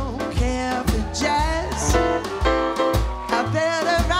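Live jazz trio playing a swing groove: piano, double bass with low notes about twice a second, and drums, with a voice singing over it.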